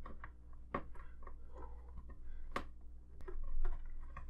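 Small wire plugs clicking and tapping against the layout surface as they are fed down a drilled hole: scattered light clicks, two sharper ones about a second and two and a half seconds in, over a faint low hum.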